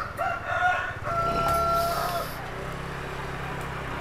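A rooster crowing once: a short opening note, then one long held note that ends a little past two seconds in.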